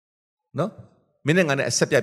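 A man preaching through a microphone: silence, a brief vocal sound about half a second in, then he resumes speaking just past the first second.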